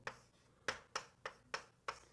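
Faint, sharp taps of a writing tool striking a writing surface as an expression is written out: about six quick clicks at uneven intervals.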